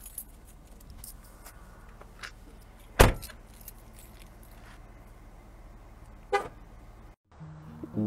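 A car door shut firmly about three seconds in, one loud sharp thump, amid light clicks and rustles; a shorter, smaller sharp sound comes a few seconds later.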